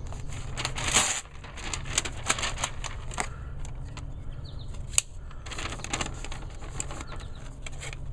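Handling sounds of a folding knife and a sheet of notebook paper: rustling of the paper and scattered clicks and taps as a Benchmade Griptilian is picked up off a wooden tabletop, with one sharp click about five seconds in as the blade is opened. A steady low hum runs underneath.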